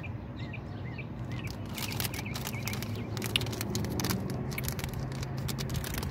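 A small bird chirping, a short call repeated about three times a second, for the first couple of seconds. From about a second and a half in, a run of sharp crackles as the plastic candy bag is handled, over a steady low hum.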